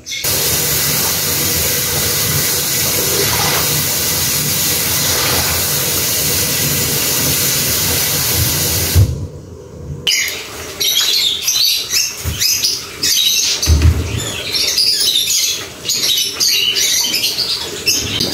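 Kitchen tap running steadily for about nine seconds, then cut off. After that come scattered clatter and a few dull knocks of washing-up at the sink, with birds chirping in short, irregular calls.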